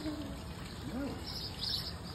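Small birds chirping: clusters of short, high chirps repeating, most in the second half.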